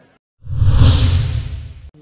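A whoosh sound effect for an animated logo sequence, with a deep rumble under a high hiss. It swells in about half a second in, then fades away before the end.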